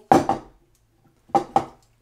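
Two short metallic clinks, a little over a second apart, as a small backpacking stove is handled against the threaded top of an isobutane gas canister while being fitted onto it.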